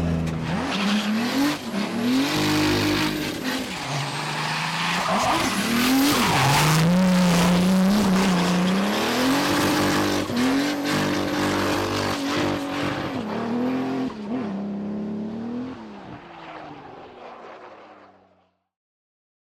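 Toyota 86-X drift car's engine revving up and down hard through a drift, with tyre squeal and skidding noise. The sound fades out over the last few seconds.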